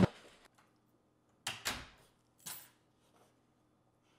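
A sheet of paper pulled off a door and handled: a few short crinkles and rustles, two close together about one and a half seconds in and one more about a second later.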